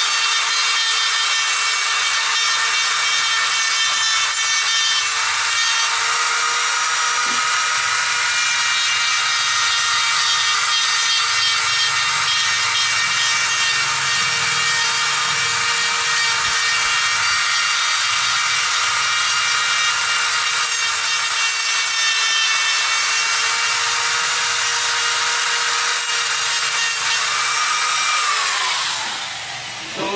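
Handheld electric rotary grinder running at a steady high whine, its carving bit grinding into the green wood of a ficus trunk to smooth and round a chop wound. Near the end it is switched off and the whine falls in pitch as it spins down.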